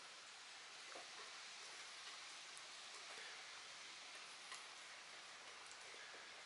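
Near silence: a steady faint hiss with a couple of faint ticks.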